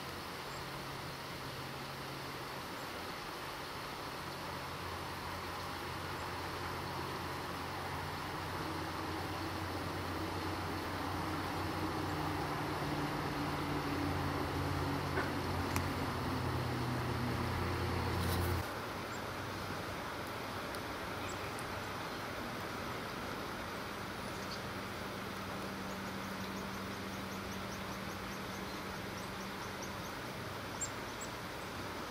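A low, steady mechanical hum of several tones over outdoor hiss, slowly growing louder and then cutting off suddenly about two-thirds of the way through.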